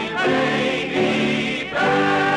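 Vocal ensemble singing sustained chords in close harmony over instrumental accompaniment, on an early sound-film track, in the final bars of a song. The chords change twice.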